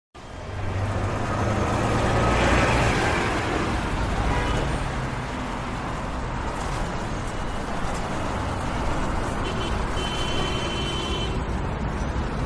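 Steady road-traffic rumble that fades in at the start and swells about two to three seconds in, as if a vehicle passes, then settles to an even wash of road noise.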